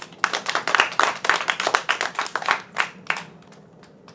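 A short round of applause: many distinct hand claps for about three seconds, then they stop.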